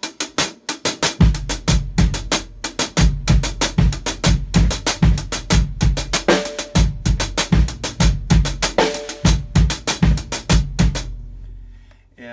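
Drum kit playing a basic timba intro groove: a steady güiro-style hi-hat pattern with syncopated kick-drum accents that come in about a second in. It includes a couple of short ringing drum notes midway, and the groove stops a second before the end.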